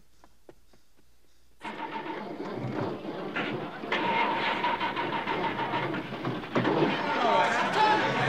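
Film soundtrack: quiet at first, then about a second and a half in a sudden jump to a loud traffic scene, with car engines, a long steady horn and people shouting.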